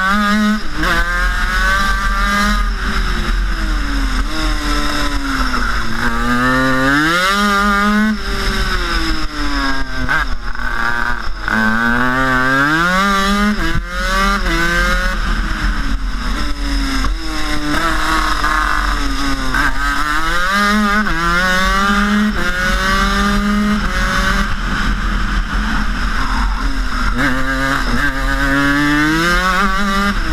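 Rotax two-cylinder 250cc two-stroke superkart engine at racing speed, heard from the driver's helmet: its pitch climbs in steps through the gears, then falls away on braking before climbing again, over and over through the laps.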